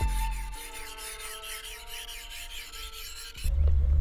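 Steel knife blade stroked repeatedly across a flat sharpening stone, a dry scraping rasp, under background music; both cut off suddenly about three and a half seconds in.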